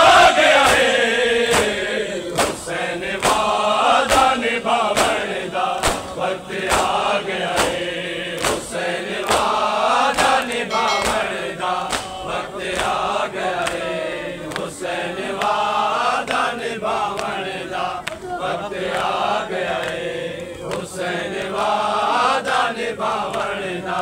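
A crowd of men chanting a Shia noha together while beating their chests in unison (matam), with sharp open-hand slaps about one and a half times a second keeping the rhythm under the sung lament.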